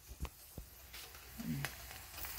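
A few faint clicks and taps of handling as the pan is readied for frying, with a short hummed voice sound about a second and a half in.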